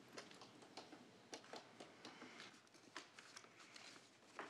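Near silence: room tone in a meeting chamber, with faint scattered small clicks and rustles.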